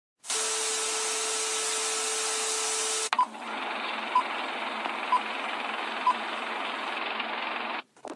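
Static hiss with a steady low tone under it, cut by a click about three seconds in. Then a duller hiss with four short high beeps about a second apart, stopping just before the end.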